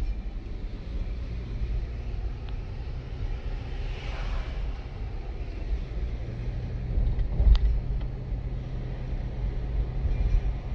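Steady low rumble of a car's engine and tyres heard from inside the cabin while driving, with a brief hiss swelling about four seconds in. A short knock about seven and a half seconds in is the loudest moment.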